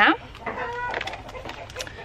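A chicken calling, one short pitched call about half a second to a second in, then fainter short sounds.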